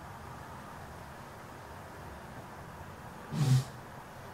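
Faint steady low room hum, then about three seconds in a single short, breathy grunt from a man.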